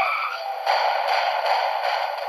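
Documentary soundtrack heard through a TV speaker, thin and without bass. A few wavering musical tones end about half a second in, and a steady rushing noise effect follows.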